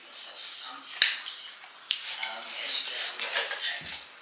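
Scissors cutting into a cardboard parcel's packaging, with a sharp snip about a second in and another near two seconds, amid scattered rustling and scraping.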